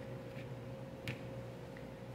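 A metal ice-cream scoop working soft açaí into a plastic container, giving a few faint light clicks, the clearest about a second in, over a steady low hum.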